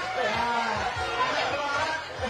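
Indistinct talking: several voices overlapping.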